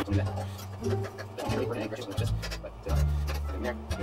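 Quiet background music with a low bass line that shifts note every second or so, over soft clicks and knocks from a greased valve slide being worked on a silver marching baritone.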